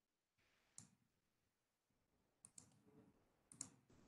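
Near silence broken by a few faint computer mouse clicks: one about a second in, a quick pair past the middle, and one near the end.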